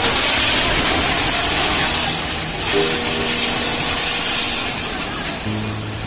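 Steady, heavy rushing noise of a flash-flood torrent of muddy water carrying debris, with faint background music over it.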